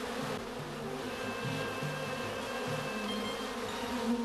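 Honeybees buzzing over an open hive: a steady hum with single buzzes coming and going at shifting pitches.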